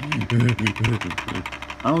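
A boy laughing in a rapid run of short pulsed "ha" bursts, with speech starting near the end.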